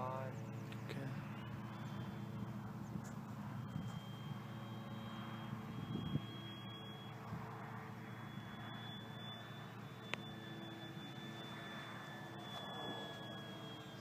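Electric motor and propeller of a distant FMS 1700 mm Corsair radio-control warbird climbing: a faint, steady high whine over a low hum. A brief thump comes about six seconds in and a sharp click near ten seconds.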